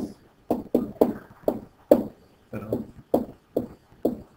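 A pen stylus knocking and tapping on a writing tablet as a word is handwritten: about a dozen short, sharp knocks, roughly three a second and unevenly spaced.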